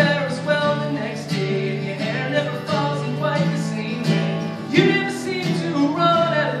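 A man singing live, accompanying himself on a strummed acoustic guitar, with held sung notes over a steady strumming rhythm.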